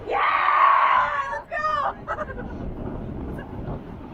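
A person's loud shout or scream lasting about a second and a half, followed by a shorter cry that falls in pitch. After that a low rumble continues underneath.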